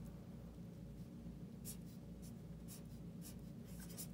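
Felt-tip marker writing on paper: a series of short strokes starting about a second and a half in.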